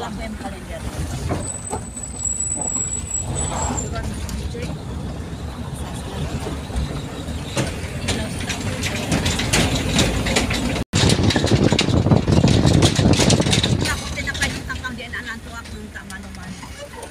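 Vehicle engine and tyres rumbling as it climbs a mountain road, heard from inside the cabin, with a brief high thin squeal a couple of seconds in. About halfway through, loud clattering and rattling as the wheels run over the steel deck of a truss bridge.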